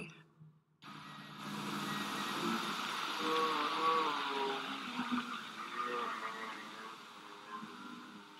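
Distorted radio-like noise: a hiss of static with faint, warbling, garbled tones. It starts suddenly about a second in and slowly fades.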